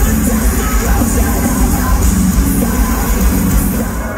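Heavy metal band playing live and loud over an arena PA, heard from the crowd, with vocals over the band.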